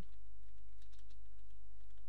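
Typing on a computer keyboard: a quick, uneven run of key clicks over a steady low hum.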